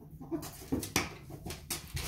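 Pet ferrets at play: a quick run of short, sharp, noisy bursts, several each second, starting about half a second in.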